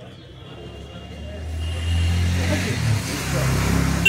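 A motor vehicle going by on the street, its engine rumble and road noise growing louder from about a second in.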